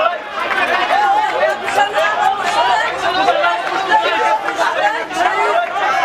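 A street crowd with many voices talking and shouting at once, overlapping so that no single speaker stands out.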